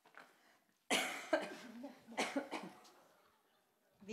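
A person coughing: a hard first cough about a second in, followed by two or three more that die away.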